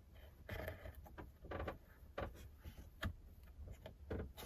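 Faint, irregular clicks and taps of a plastic rocker switch and its wire connectors being handled and pushed into a cut-out in a plywood panel.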